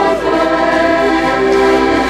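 Two diatonic button accordions (Styrian-type harmonicas) playing a traditional tune together, holding long, steady chords.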